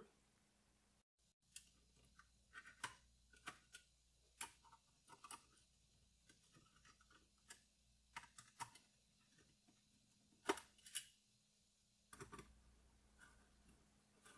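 Faint, irregular small clicks and taps of a T20 Torx wrench and hardware being handled at a motherboard's CPU socket, with two louder clicks about ten seconds in.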